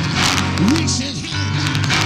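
Church keyboard holding sustained chords under a preacher's amplified voice, which slides up and down in pitch.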